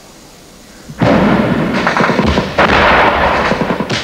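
Gunfire: a loud, dense volley of shots that starts suddenly about a second in and lasts nearly three seconds.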